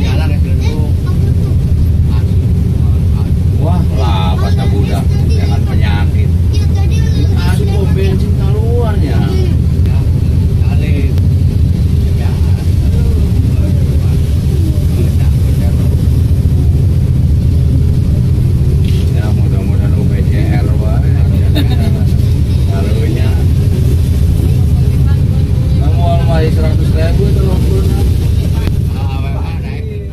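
Steady low rumble of a vehicle's engine and tyres on the road, heard from inside the moving vehicle's cabin, with indistinct voices talking now and then. The sound fades out at the very end.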